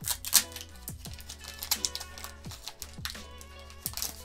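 Foil booster-pack wrapper being torn open and crinkled by hand, in sharp crackles strongest just after the start, over background music.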